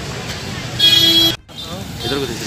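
A vehicle horn honks once, loud and steady for about half a second, over a low street background; it cuts off suddenly.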